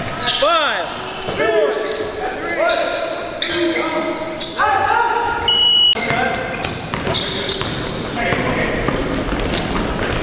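Basketball game in a large gym: a ball bouncing on the hardwood as it is dribbled, short rubbery squeaks of sneakers on the floor, and players calling out, all with a hall echo. A brief high steady tone sounds a little past the middle.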